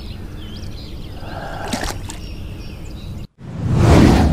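Light water splashing as a bass is released back into the pond, over steady outdoor background noise. Near the end the sound cuts out for a moment and a rising whoosh sound effect begins.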